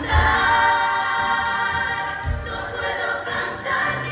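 A female soloist and a children's choir singing a saeta, the devotional Holy Week song, in long held notes over a deep pulse that comes about every two seconds.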